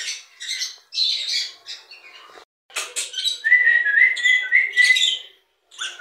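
Caged pet birds chirping and squawking in short, high calls, then a steady whistle held for about two seconds in the second half.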